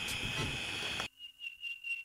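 Crickets chirping in a steady high trill. A louder, fuller background cuts off suddenly about a second in, leaving only the crickets.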